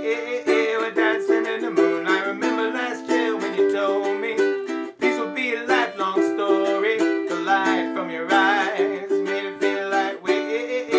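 Ukulele strumming a steady rhythm through the Am–G–D–Em chord cycle, with a man's voice singing along.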